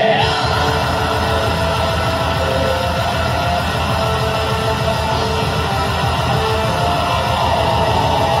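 Folk metal band playing live: distorted electric guitars over fast, steady drums, with yelled vocals.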